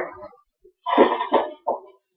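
A person coughing three times in quick succession, short harsh bursts about a second in.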